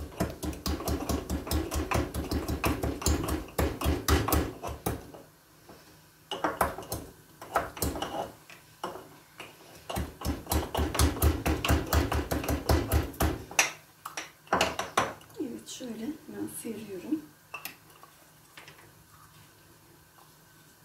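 Garlic cloves being pounded in a wooden mortar with a pestle: rapid, even knocking in two long runs, the first stopping about five seconds in and the second a little past the middle, with a few looser knocks between and near the end.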